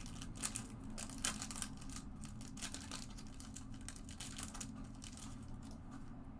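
Foil trading-card pack wrapper crinkling in the hands, then a stack of cards being handled, in faint scattered rustles and clicks over a steady low hum.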